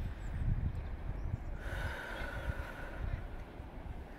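Wind buffeting the microphone in an uneven low rumble. From a little before the halfway point to near the end, a faint hiss with a thin steady whistle runs underneath.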